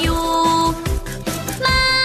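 Instrumental backing music for a children's song: sustained melody notes over a steady beat, with no singing.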